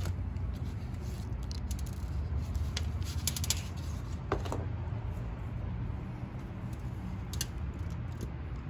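Scattered light scrapes, taps and clicks of a small plastic nursery pot and crumbling soil as a maple sapling's root ball is slid out of the pot by hand, over a steady low rumble in the background.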